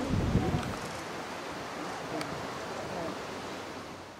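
Steady outdoor background noise with faint voices of people talking, and a brief low rumble in the first half-second; the sound fades out at the end.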